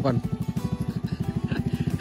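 Small motorcycle engine running slowly at low revs, with a fast, even putter.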